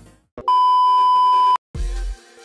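An electronic beep, one steady high tone like a censor bleep, lasting about a second after the music cuts out. Pop music starts again near the end.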